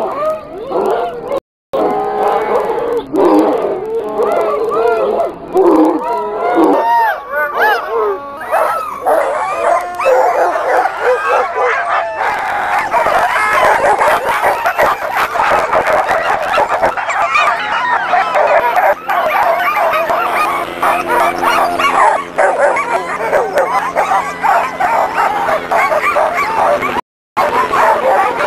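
A large chorus of harnessed sled dogs barking, yipping and howling over one another without a break, the clamour of teams straining to run while they wait to start.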